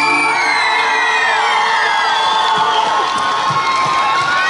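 Outdoor concert crowd cheering, whooping and shouting as a song ends; the band's last held chord stops within the first half-second.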